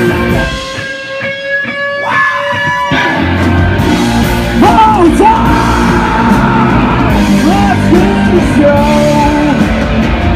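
Live rock band playing loud. For the first three seconds the bass and drums drop out and a few held electric-guitar notes ring on their own. Then the full band comes back in, and a voice sings and yells over it.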